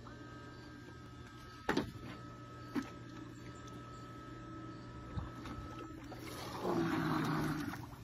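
QOMOTOP robotic pool cleaner's electric motor running with a thin steady whine and a click, then water sloshing and gurgling as the cleaner is lowered into the pool near the end.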